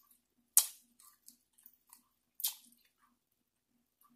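Close-up eating sounds of a man sucking and chewing peeled shrimp from his fingers: a sharp wet smack about half a second in, another about two and a half seconds in, and soft chewing clicks between.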